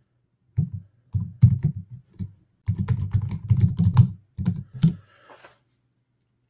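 Computer keyboard typing in quick runs of keystrokes with short pauses between them, stopping about five seconds in.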